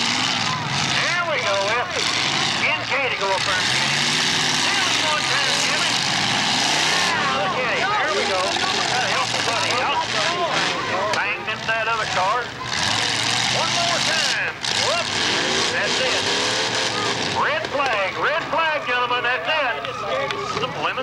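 Demolition derby car engines running and revving, with many people's voices talking over them throughout.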